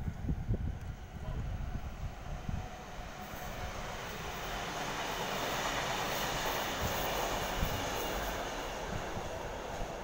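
Double-deck Sydney Trains electric passenger train running through the station on the far track. Its rolling noise builds to a peak around the middle and then eases off as it moves away.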